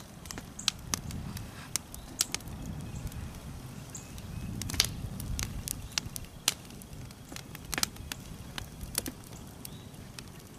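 Freshly lit wood fire of split kindling and small logs crackling, with sharp irregular pops, the loudest about halfway through, over a steady low rumble.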